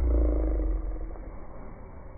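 A low, rasping growl-like vocal sound from a person, loudest at the start and fading after about a second, over a deep rumble.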